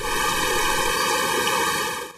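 Fast-flowing floodwater rushing, a steady loud rush that starts abruptly and cuts off at the end.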